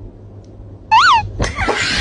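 A domestic cat gives one short meow that rises and falls in pitch. About half a second later a sudden loud burst of sound, the loudest thing here, cuts in.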